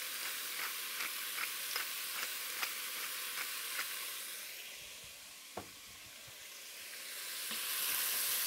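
Pork chunks sizzling in hot oil in an enameled Dutch oven, with the small regular clicks of a pepper mill being twisted, about two a second, through the first four seconds. The sizzle dips midway, with a single knock, then grows louder again as the pork is stirred with a wooden spoon near the end.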